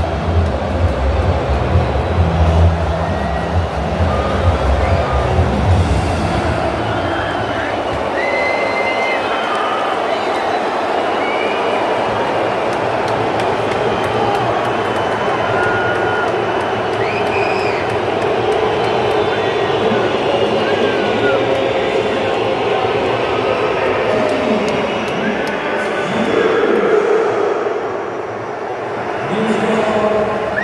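Large stadium crowd of football supporters chanting and singing together without a break, with short, shrill whistles cutting through several times.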